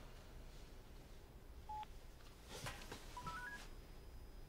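Smartphone beeps as a call is placed: one short beep, then about a second and a half later a quick run of short beeps stepping up in pitch. A soft click falls between them.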